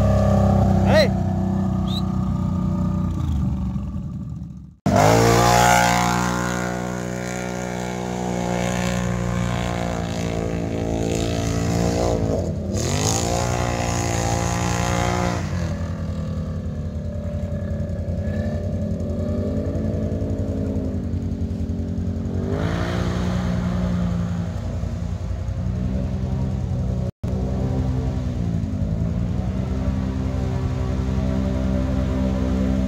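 ATV engines revving through mud and water, the pitch rising and falling with the throttle. Near the start one machine is running close by. The sound cuts out abruptly about five seconds in and resumes loud, then engine revving continues, with a deep dip and climb in pitch about a third of the way through.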